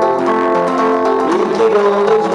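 Live solo acoustic guitar song: the guitar under a melody of long held notes, with one note sliding up in pitch about one and a half seconds in.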